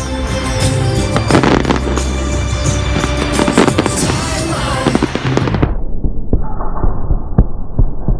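Aerial fireworks shells bursting in quick succession, many sharp bangs over music from loudspeakers. About two thirds of the way through, the sound turns muffled, losing its high end, while the bangs keep coming.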